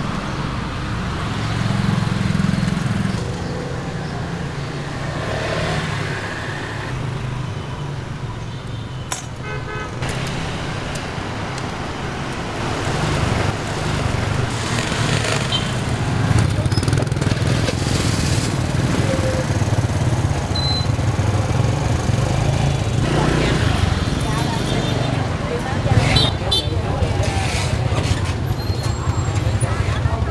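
Dense motor-scooter traffic running steadily, with occasional horn toots and the voices of people in the street.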